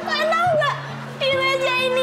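A woman wailing in high-pitched, drawn-out fake crying over background music with a steady bass line.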